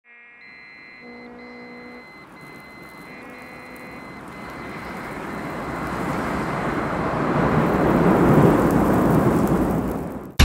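Produced dust-storm sound effect: a rushing wind-like noise that swells steadily for several seconds and peaks near the end. In the first few seconds it is joined by soft, held synthesizer tones.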